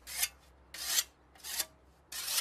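Whetstone drawn along a scythe blade to hone its edge: three rasping strokes about half a second apart, each growing louder toward its end.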